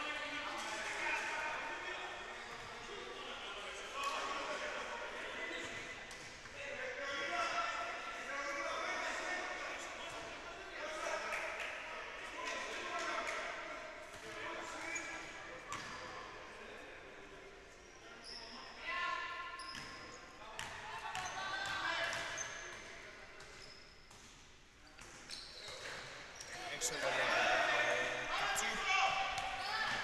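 Basketball game in a gym hall: voices calling out across the court, and a basketball bouncing on the wooden floor, dribbled and louder near the end.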